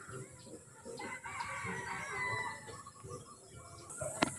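A rooster crowing faintly, one drawn-out crow starting about a second in.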